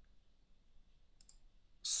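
A few faint, quick clicks about a second in, from operating the computer while a dot grid is pasted onto the drawing screen. A man's voice resumes near the end.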